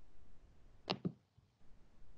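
Two quick clicks at a computer, heard over the faint hiss of a video-call microphone.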